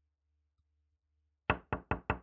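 Knocking on a door: a quick run of sharp knocks, about four a second, starting about one and a half seconds in.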